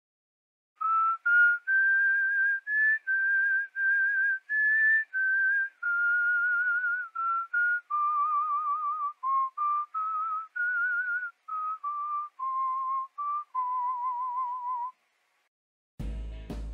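A whistled tune: a melody of clear single notes, some short and some held with a wavering vibrato. It climbs a little early on, then drifts lower through the second half and ends on a long wavering note.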